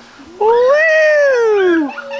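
A young child's long, loud squeal of delight on a swinging tire swing, one drawn-out call whose pitch rises and then falls away.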